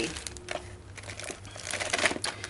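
Plastic-wrapped first aid supplies crinkling and rustling as hands shift them about in a plastic storage tub, with a scatter of small clicks and knocks.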